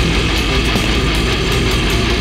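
Slamming brutal death metal played loud and steady: heavily down-tuned seven-string guitars riffing in drop G.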